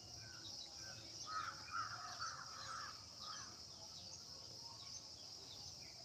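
Birds calling outdoors, with a run of louder harsh calls from about one to three and a half seconds in, over a steady high-pitched insect drone.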